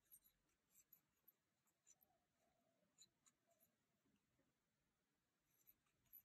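Near silence, with faint scattered ticks and rustles of a metal crochet hook working cotton thread.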